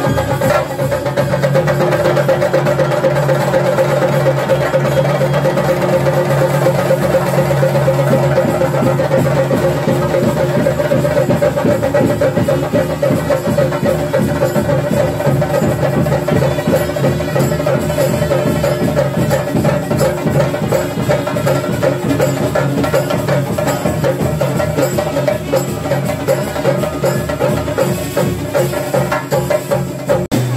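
Theyyam ritual percussion: chenda drums and hand cymbals played fast and continuously, with a steady held note running through the drumming.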